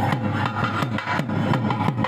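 Background music with a fast, steady drum beat; the violin melody heard around it mostly drops out here.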